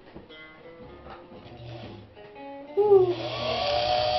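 Faint handling clicks as the bobbin winder is set, then about three quarters of the way through the Sewmor Class 15 sewing machine's electric motor starts. Its whine rises in pitch and settles into a steady run, winding a bobbin.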